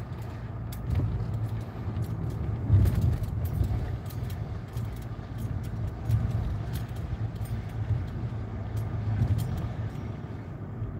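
Mercedes-Benz car heard from inside the cabin while driving slowly: a steady low engine and tyre rumble with scattered light rattling clicks, and a louder bump about three seconds in.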